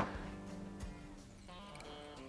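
Quiet background music with a few held, guitar-like notes, the notes changing about one and a half seconds in.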